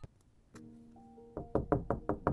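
Knocking on a panelled door: one light tap, then a quick run of about five knocks starting a little past the middle, faint background music under it.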